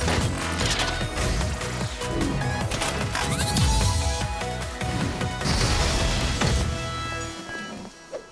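Energetic cartoon transformation music with mechanical clanks and impact hits as a cartoon robot plane changes into robot form. It cuts off sharply about seven seconds in.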